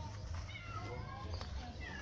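A few short animal calls that glide down in pitch, over a low steady hum.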